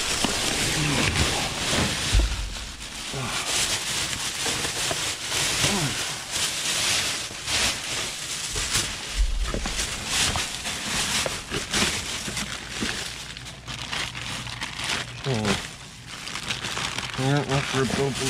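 Plastic trash bags and food packaging crinkling and rustling continuously as a gloved hand rummages through them, with a few low thumps as items shift.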